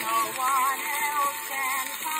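Old Gennett 78 rpm shellac record playing a soprano with orchestral accompaniment: a sung melody with strong vibrato, over steady surface hiss.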